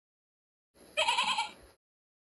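A single short bleat with a wavering pitch, starting and stopping sharply.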